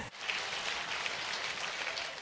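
A congregation clapping their hands together in steady applause, tailing off a little near the end.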